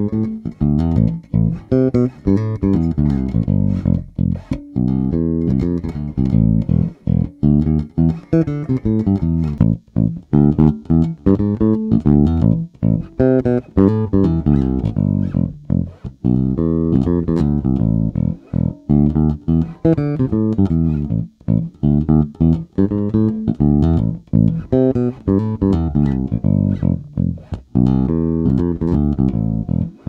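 Electric bass, a Sterling by Music Man Ray4 SUB, playing a fingerstyle line of plucked notes through its onboard preamp with the mids boosted. The first part is played on the stock pickup and the later part on a Nordstrand Big Blademan pickup wired in series.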